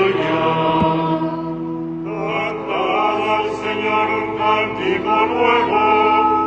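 Liturgical chant: voices singing a psalm line over long-held sustained accompanying notes.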